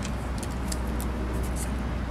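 Steady low background rumble of motor traffic, with a few faint short high clicks scattered through it.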